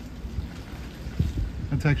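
Gusty wind buffeting the microphone: a low, uneven rumble with a few heavier thumps a little over a second in.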